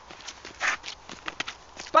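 Quick, uneven footsteps of people running on wet tarmac, with a brief rustle a little before the middle.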